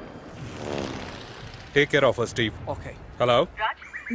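People speaking in short phrases of film dialogue from about two seconds in. Before the talk there is a brief hum that falls in pitch.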